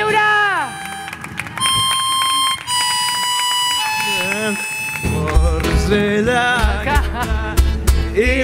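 Acoustic folk band playing. A falling sung note opens, a harmonica holds long steady notes, and about five seconds in the guitar and a cajón come in with a steady beat under a wavering melody line.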